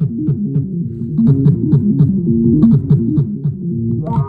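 Playback of a recorded Eurorack modular jam from a 1010 Music Bluebox: a sequenced synth line of quick stepping notes, filtered dark and low, with light drum ticks at a steady pulse on top.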